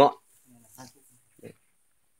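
A man's spoken word trailing off at the start, then a few faint, short sounds.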